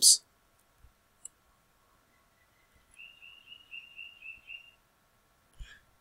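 Computer mouse clicks: a sharp click at the start, two faint ticks about a second in, and a couple more clicks near the end as the material dialog is applied and closed. In between, a faint high chirping trill of about eight quick pulses lasts a second and a half.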